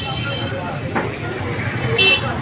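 Busy street ambience: motorcycle traffic running past, with people's voices in the background and a louder burst near the end.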